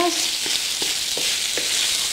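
Smoked bacon strips sizzling as they sauté in a frying pan, stirred with a wooden spatula that makes a few light clicks against the pan.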